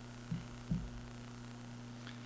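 Steady low electrical hum on a lecture-hall recording, with two faint soft thumps about a third of a second and three quarters of a second in.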